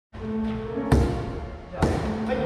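A plastic pickleball bounced twice on a hardwood gym floor, about a second apart, as the server readies a serve. Background music plays throughout.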